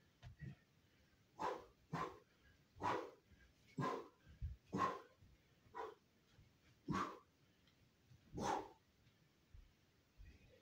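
A series of about eight short, sharp vocal bursts, barks or shouts, spaced roughly a second apart.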